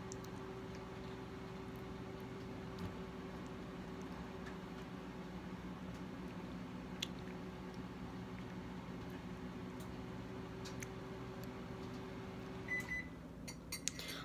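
Microwave oven running with a steady low hum, which cuts off near the end with a single short, high beep, as when its cycle finishes. A few faint clicks are heard over the hum.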